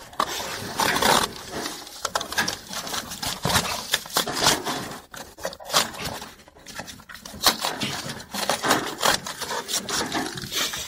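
Cardboard being cut and torn inside a cardboard box: irregular scraping and crackling with many sharp snaps, muffled and boxy from inside the box.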